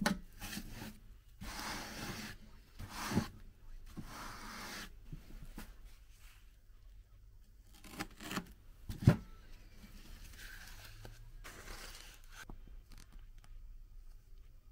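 Duct tape pulled off the roll and torn in strips, with cling film rustling and crinkling, in several rasping stretches in the first few seconds and a sharp knock about nine seconds in.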